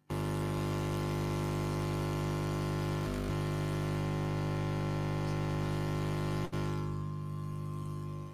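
Loud steady electrical hum from the audio feed, a low buzz with many overtones. It cuts in suddenly as a signal is sent down the line, breaks off for an instant about six and a half seconds in, and drops in level near the end.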